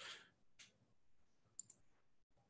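Near silence: a short breath at the start, then two faint computer mouse clicks, the second one sharper, a little past halfway.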